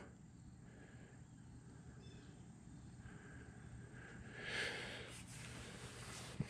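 Quiet outdoor background, faint throughout, with a soft swell of noise about four and a half seconds in.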